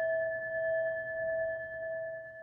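A struck meditation bell ringing on after being struck, a clear tone with a higher overtone fading slowly.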